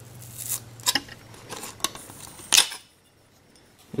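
TV motherboard being handled and lifted off the sheet-metal rear chassis, its edges and components scraping and clinking against the metal in a few short strokes; the loudest comes about two and a half seconds in.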